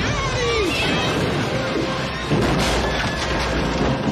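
Film sound mix of a bombardment: a deep rumble of explosions throughout, with voices crying out in falling wails in the first second and a crash of falling debris about two and a half seconds in, under music.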